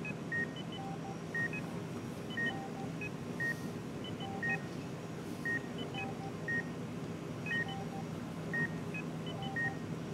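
Hospital patient monitor beeping, short electronic tones at a few different pitches repeating about once a second. A steady low hum runs underneath.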